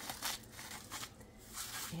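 Salt grinder being twisted over the pizza, giving a series of short, gritty crunching bursts a few times a second as the salt is cracked.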